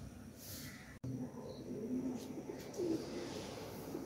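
A bird calling in several short, low notes over a soft room hiss, after a brief dropout in the sound about a second in.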